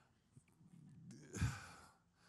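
A quiet pause broken about midway by a man's breathy exhale into a handheld microphone, run together with a softly spoken word.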